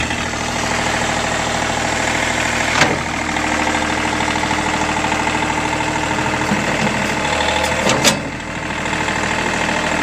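John Deere 3038E compact tractor's three-cylinder diesel engine running steadily just after starting, with a short clunk about three seconds in and another about eight seconds in.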